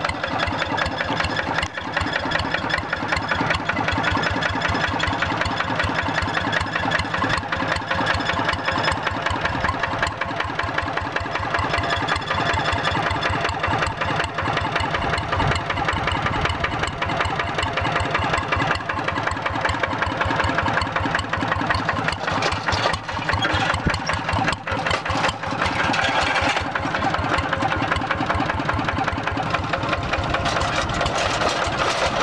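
Single-cylinder Kubota RD diesel engine of a Quick G3000 Zeva two-wheel walking tractor running steadily, with a rapid, even firing beat.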